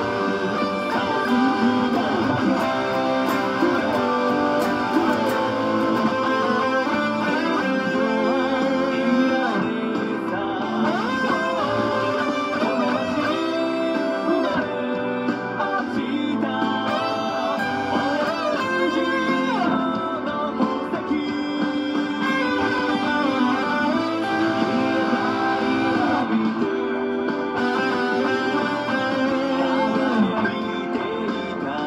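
Electric guitar playing a cover of a pop song, picked notes and chords moving continuously at a steady level.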